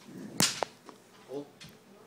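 A single sharp smack or crack about half a second in, with a smaller click just after it.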